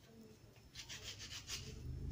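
Faint, quick scraping strokes, several a second, starting about halfway in: a kitchen knife working through fruit during salad preparation.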